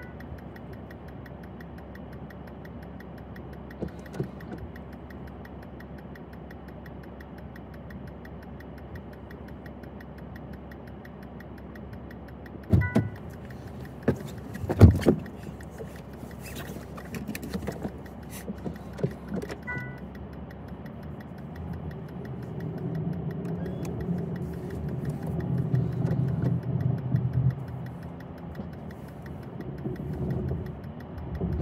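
2023 Honda Pilot Elite's cabin, engine idling with a steady low hum. A chime sounds about 13 s in with a loud thump, then a louder thump about 15 s in, as of the driver's door opening and shutting, and another single chime near 20 s. From about 22 s a louder low rumble builds as the SUV moves off through snow.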